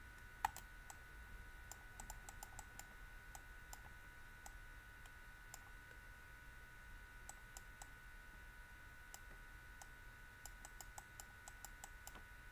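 Faint, irregular light clicks of a stylus tapping and moving on a tablet screen while writing by hand, with one sharper click about half a second in, over a faint steady hum.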